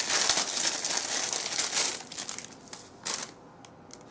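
Crinkling of a plaster-of-Paris roll's wrapper being opened and handled, dense for about two seconds, then dying away, with one more short crinkle about three seconds in.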